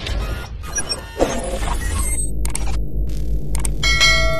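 Intro sting sound effects over a steady deep bass drone: whooshing sweeps in the first two seconds, then a few sharp mouse-click effects from a subscribe-button animation, and a bell-like ring struck near the end.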